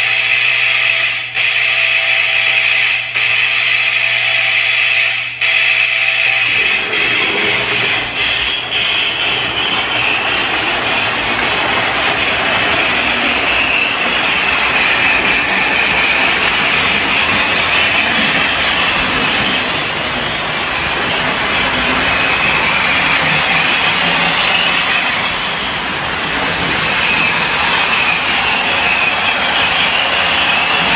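MPC-era Lionel Blue Comet Hudson locomotive under power on the track. A steady electrical hum with a few clicks lasts about the first six seconds. It then gives way to a continuous hissing rush of the running train and its electronic 'sound of steam' unit.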